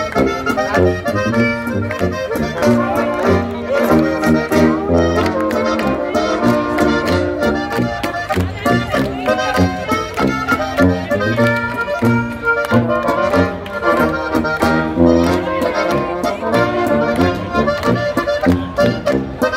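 Bavarian folk dance band playing a Boarischer live over a PA: accordion leading the tune over a tuba bass and strummed guitar, in a steady two-beat dance rhythm.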